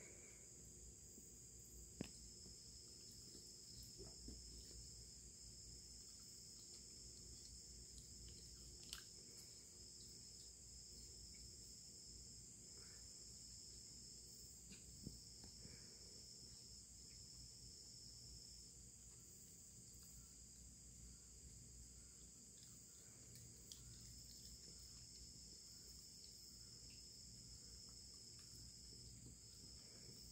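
Faint, steady high-pitched trilling of crickets, with a few soft clicks scattered through it.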